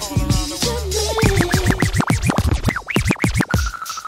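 Dance music, then from about a second in a vinyl record being scratched back and forth on a DJ turntable: quick rising-and-falling sweeps in a fast run, with a steady high tone holding near the end.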